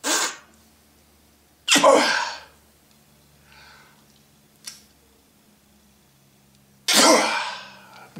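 A man blowing hard by mouth into one port of a Mercedes M117 air pump shutoff valve in three strong puffs and one short one. Air does not pass through: the valve is holding closed, as it should when no vacuum is applied.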